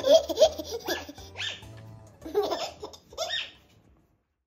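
A baby laughing in several short bursts over background music with a low bass line; both fade out near the end.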